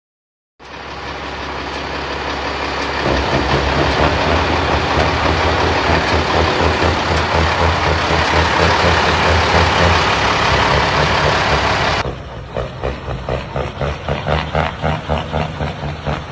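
Heavy diesel semi-truck engine running loud, swelling over the first few seconds. About twelve seconds in it drops abruptly to a quick, even pulsing.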